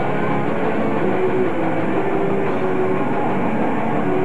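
Heavy metal band playing live, loud and dense: distorted electric guitars and drums in a steady wall of sound with no pause.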